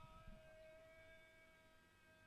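Near silence: a faint steady hum held through the pause, slowly fading.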